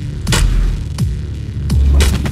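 A film fight-scene sound mix: a deep, throbbing bass hum with sharp hits about every two-thirds of a second, each followed by a short falling boom.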